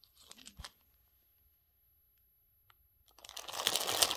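Clear plastic bag crinkling as it is picked up and handled, building up loudly about three seconds in after a few soft rustles and a nearly quiet stretch.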